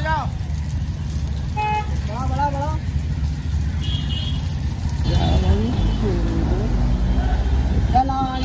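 Steady low rumble of two-wheeler and road traffic on a waterlogged street, with a short vehicle horn toot about two seconds in and voices in the traffic.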